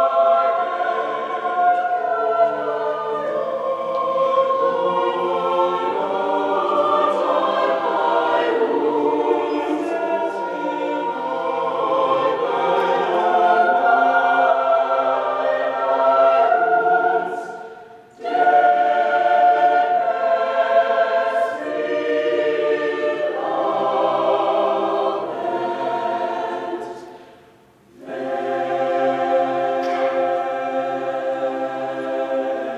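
Mixed choir of men's and women's voices singing in full, sustained chords. The singing breaks off briefly twice, about 18 seconds in and again near the end, before the next phrase comes in.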